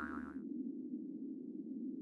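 A wobbling, boing-like sound-effect tone with many overtones cuts off about half a second in. It leaves a steady low hum.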